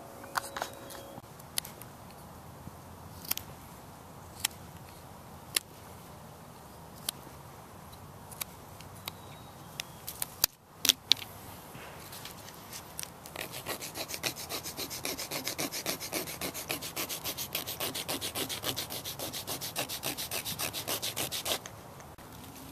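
A small rosewood pendant is rubbed back and forth on a large rounded stone to sand it smooth, giving a steady run of quick, even scraping strokes that starts about halfway through. Before that, a few scattered sharp clicks sound over a faint background.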